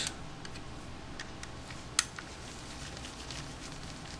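Faint ticks and clicks of a PH00 Phillips micro screwdriver turning tiny screws out of a compact camera's body, with one sharper click about two seconds in.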